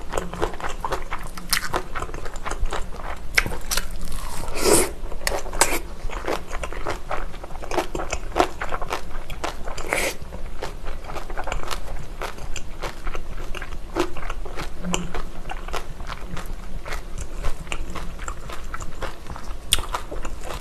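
Close-miked mouth sounds of a person chewing a mouthful of gimbap and kimchi: a dense run of wet smacks and crisp crunches, with louder bursts about five and ten seconds in.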